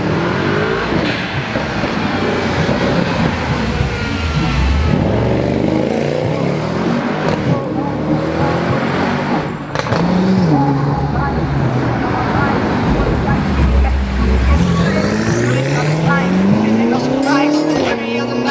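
Car engine revving and accelerating hard, its pitch stepping up and dropping back as it shifts, then a long rising pull through the last few seconds.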